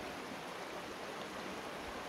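Steady, even rush of a creek running over rocks.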